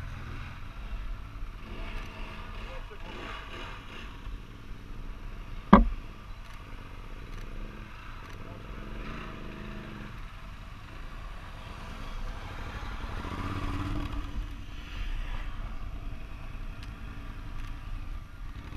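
Off-road motorcycle engine running as the bike rides toward the microphone through mud, growing louder in the second half. A single sharp knock about six seconds in.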